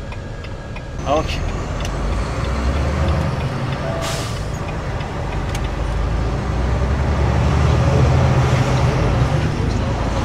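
Semi-truck diesel engine running, heard from inside the cab, its low rumble growing louder from about seven seconds in as the truck picks up speed. A short hiss of air sounds about four seconds in.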